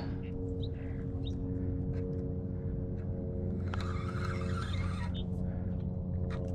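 Fishing reel working against a hooked carp, with a rasping burst of about a second and a half roughly four seconds in and scattered light clicks, over a steady low hum.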